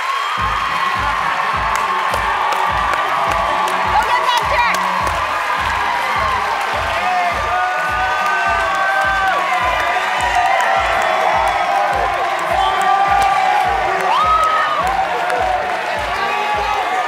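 Upbeat music with a steady bass beat, about two beats a second, starting about half a second in, under a crowd cheering and whooping excitedly.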